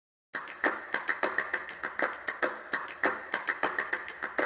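Irregular patter of sharp clicks, several a second: raindrops striking a hard surface close to the microphone.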